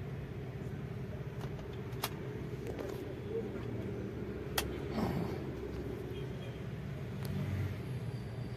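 2007 Jeep Liberty engine idling steadily, heard from inside the cabin, with a few light clicks over it.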